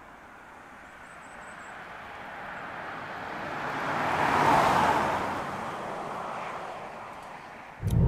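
Citroen C6 diesel saloon driving past on a country road: its sound swells as it approaches, is loudest about four and a half seconds in, then fades away.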